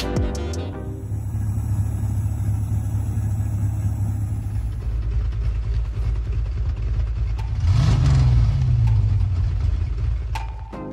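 Car engine idling with a deep, steady rumble, then revving up once about eight seconds in and easing back down. Music runs into the first second and then gives way to the engine.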